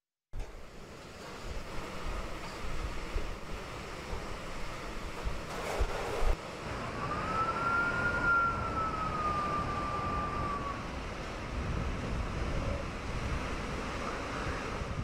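Typhoon wind and heavy rain make a steady rushing noise, with gusts, including a strong one about six seconds in. In the second half, a single high tone rises and then slowly sinks over about four seconds.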